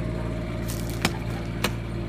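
Steady low mechanical hum from a parked motorhome, with two short sharp clicks, one about a second in and one near the end.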